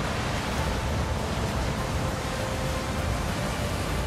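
Wind and heavy seas breaking over a ship's bow: a steady rushing noise with low buffeting, and faint sustained music tones underneath.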